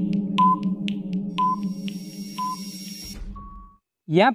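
Quiz countdown-timer sound effect: a short beep-tick once a second over a low droning music bed that fades away. About three seconds in it ends with a brief higher tone and a low thud as the time runs out.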